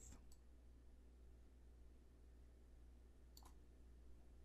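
Near silence, broken by two faint, short mouse clicks, one just after the start and one about three and a half seconds in.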